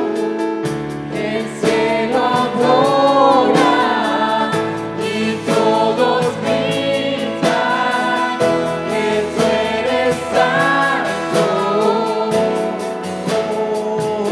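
A live Christian worship band playing a Spanish-language praise song: sung vocals over keyboard, guitars and a drum kit keeping a steady beat.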